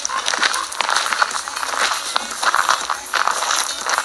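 Footsteps on a dirt and gravel path: a run of irregular crunches over a steady outdoor hiss.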